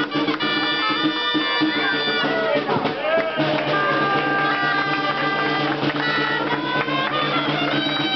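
Gralles, the Catalan double-reed shawms, playing the traditional tune that accompanies a human tower, in held reedy notes that change pitch every second or two, with crowd voices underneath.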